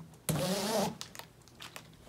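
A zipper on the fabric deck cover of an Advanced Elements Advanced Frame Convertible inflatable kayak being pulled open in one quick pull, a little over half a second long.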